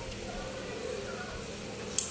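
Quiet room tone with a faint steady hum. Near the end comes a single sharp click as the carbon fishing rod is handled.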